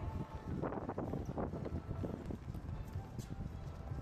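Outdoor background noise: a steady low rumble with irregular short knocks and indistinct bursts of sound.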